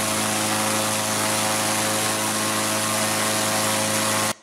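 Engine-driven hot-air balloon inflator fan running at speed, very loud: a steady engine hum under a strong rush of air from the fan blades.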